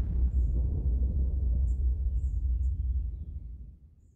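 Deep low rumble of a title-card sound effect, holding steady, then fading out over the last second, with a few faint high blips above it.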